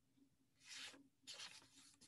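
Near silence broken by two faint, brief rustles less than a second apart.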